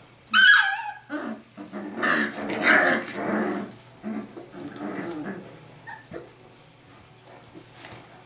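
Young Rhodesian Ridgeback puppies play-fighting: a high yelp that falls in pitch just under a second in, then a burst of growling and barking, dying down to softer grumbles by about halfway.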